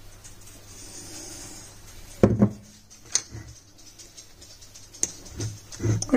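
Olive oil pouring softly from a bottle into a glass jar, then a loud knock about two seconds in and a few light clicks of a knife blade against the glass jar.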